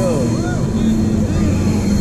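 Steady low mechanical hum of fairground ride machinery, with a few brief voices over it.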